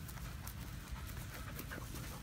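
Golden retriever panting close by, a run of short quick breaths.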